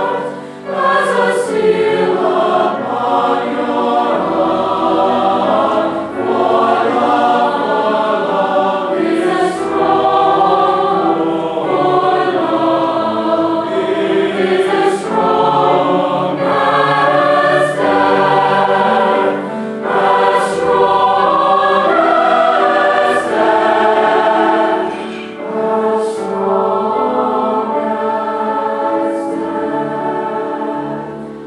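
Large mixed choir singing a sustained choral anthem in harmony, chords shifting slowly, with crisp sung 's' consonants now and then.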